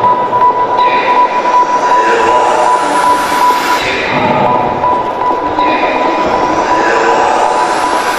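A sound-effect passage in a stage routine's soundtrack: a steady high-pitched squeal held over a rough, noisy rumble, with rising sweeps, in place of beat-driven music.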